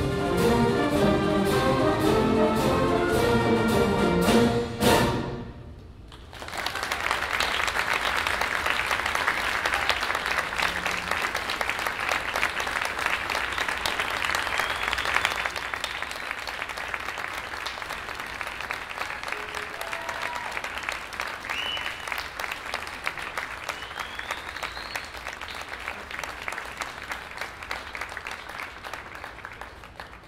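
A full orchestra of strings and winds, brass to the fore, plays the final chord of a piece, which stops about five seconds in. After a short pause the audience applauds, and the applause slowly dies away near the end.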